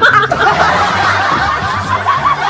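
Hearty male laughter, wavering and continuous, at the sight of his face turned female by a photo-editing app.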